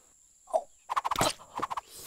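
Cartoon sound effects of a chameleon catching a fly with its tongue and eating it: one short sound about half a second in, then a quick run of clicks and smacks lasting about a second.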